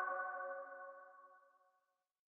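The final sustained chord of a short intro music sting ringing out and fading away over about a second and a half.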